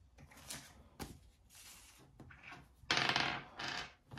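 A die rolled across a wooden tabletop, clattering and tumbling for just under a second near the end, after a couple of faint clicks.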